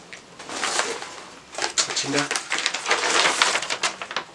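Rummaging in a backpack: rustling and crinkling of paper and fabric as a large rolled paper calendar poster is pulled out, louder in the second half. A brief low vocal sound comes about two seconds in.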